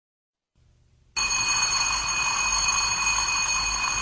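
An alarm bell ringing steadily, starting about a second in and cutting off abruptly after about three seconds.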